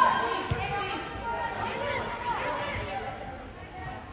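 Indistinct voices calling out during an indoor youth soccer game, with one dull thump of the ball being kicked about half a second in.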